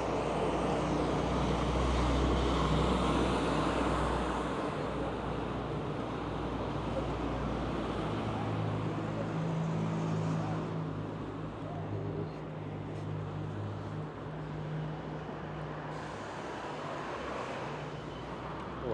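Downtown street traffic noise, loudest in the first few seconds. From about eight seconds in, an articulated city bus's engine running alongside adds a steady low drone.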